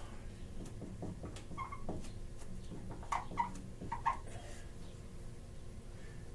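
Marker squeaking and ticking on a whiteboard during writing, with a few short squeaks between about one and a half and four seconds in.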